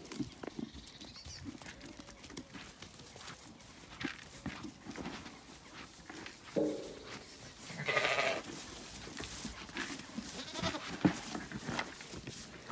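Zwartbles sheep bleating: a few calls, the loudest about eight seconds in, over scattered rustles and steps in straw.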